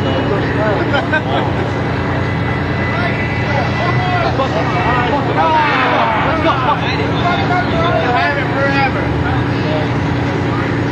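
Many people talking at once, voices overlapping and busiest around the middle, over a fire engine's engine idling steadily.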